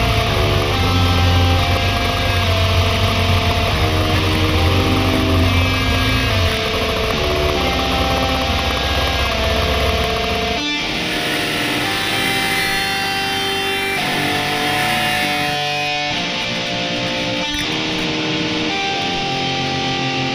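Background music: a song carried by guitar, with a heavy bass low end that drops out about halfway through, leaving a lighter guitar passage.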